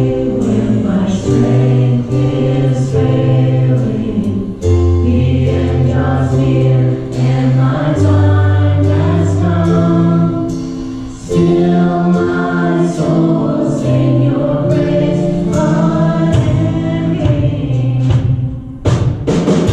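Live Christian worship song: women's voices singing long, held phrases over a band with keyboard, deep bass notes and drums with cymbals.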